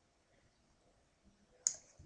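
Near silence, then a single sharp click of a computer mouse button near the end.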